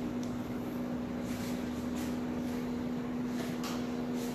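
Faint, scattered snips of laser-edge hair-cutting scissors trimming the ends of wet hair, over a steady low electrical hum.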